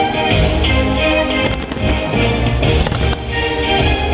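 Fireworks show: the show's music score playing loudly while aerial fireworks burst, with several sharp bangs through it.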